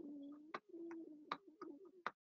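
A low wavering tone, like a coo or a hum, that breaks off and starts again a few times, with sharp clicks and rustles of paper handled close to a microphone.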